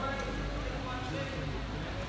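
Sports hall background noise, a steady hum with faint distant voices talking now and then.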